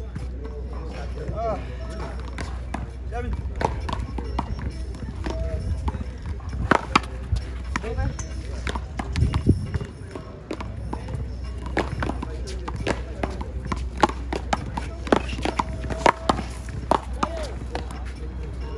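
Paddleball rally: a rubber ball cracking off paddles and the concrete wall in a quick, irregular series of sharp smacks, over a steady low outdoor rumble.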